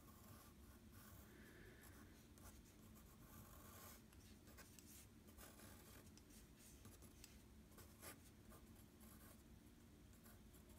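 Faint scratching of a graphite pencil on paper in short, irregular strokes as a drawing is sketched out. There is a slightly sharper tick about eight seconds in.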